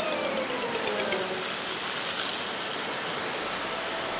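Steady hiss of falling rain, with a cartoon car's engine hum sliding down in pitch and fading out over the first second and a half.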